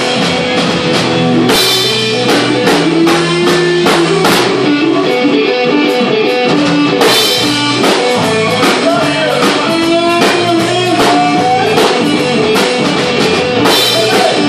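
A blues-rock band playing live on stage with no vocals: electric guitar lines over bass guitar and drum kit, with a few cymbal crashes.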